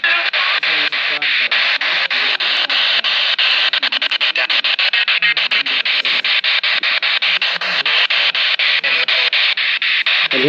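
Handheld spirit box sweeping through FM radio stations: loud static chopped by a rapid, even run of clicks as it steps from frequency to frequency, with split-second fragments of broadcast voices and music. The sweep runs quicker around the middle.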